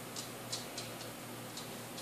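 A few faint, irregular clicks from paper napkins and their packaging being handled, over a low steady room hum.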